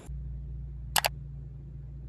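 A camera shutter click, two sharp clicks in quick succession about a second in, over a low steady hum.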